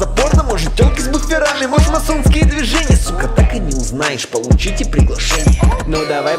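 Russian trap-style hip-hop track: rapped vocals over deep bass and irregular kick-drum hits, the bass dropping out briefly twice.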